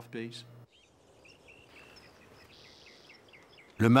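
Faint outdoor background with small birds chirping, a string of short high calls.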